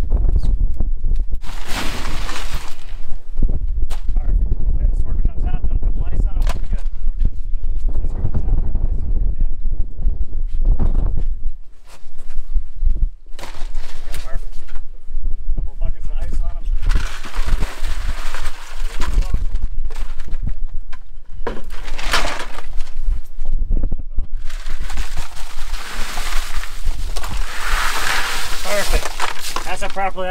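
Ice being poured and shoveled over freshly caught tuna in a boat's fish box to chill the catch. It clatters and crunches in several bursts, most of them in the second half, over a steady low rumble.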